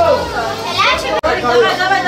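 Children's and adults' voices talking and calling out over one another in a crowded room, with a sudden momentary dropout a little past the middle.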